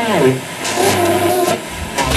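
Mars JR-600 boombox radio being tuned across the dial: hiss between stations, with brief snatches of broadcast sound and a falling glide in pitch at the start.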